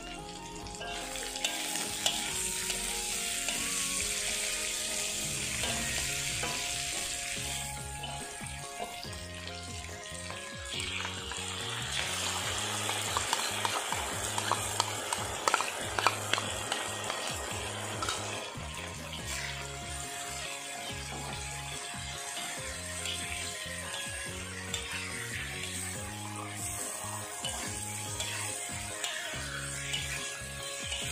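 Vegetables sizzling in a hot wok while a metal spatula stirs them, scraping and clicking against the pan, loudest in the middle stretch. Background music plays underneath.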